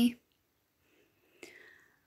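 A woman's spoken word ends, then a pause; past the middle, a faint mouth click and a soft breath drawn in before she speaks again.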